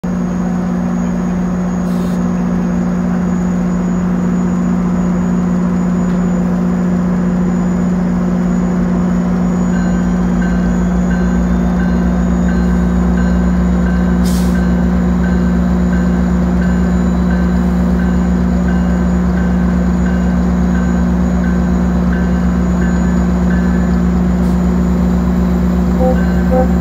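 GO Transit diesel locomotive idling at a standstill with a loud, steady engine hum. About ten seconds in, a regular high-pitched beeping starts, repeating a little faster than once a second.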